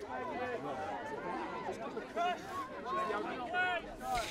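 Faint, distant voices of players and onlookers calling and talking over one another across an outdoor sports pitch.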